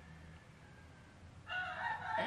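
A rooster crowing, one crow starting about three quarters of the way in: a high call held steady, then falling in pitch.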